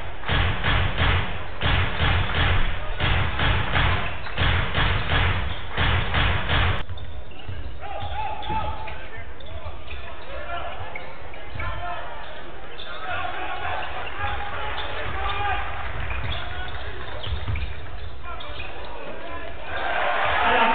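For the first seven seconds, a fast, steady beat with heavy bass. It then cuts to the sound of basketball play in an arena: the ball bouncing on the hardwood court, sneakers squeaking, and voices in the hall.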